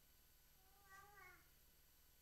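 Near silence, broken about a second in by one faint, high-pitched call lasting about half a second that rises in pitch at its end.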